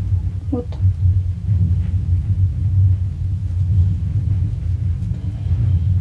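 A loud, steady low rumble or hum runs constantly in the background.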